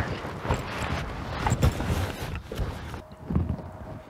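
Rustling and irregular knocks from a camera being handled against fabric and stubble close to the microphone, loudest right at the start.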